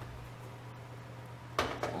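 A lidded cast iron Dutch oven set down on a gas stove's iron grate about a second and a half in, a single sudden clank, over a steady low hum.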